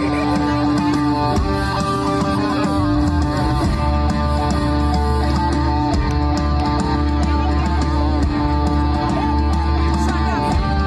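A rock band playing, led by electric guitar, with a deep bass note held through the second half.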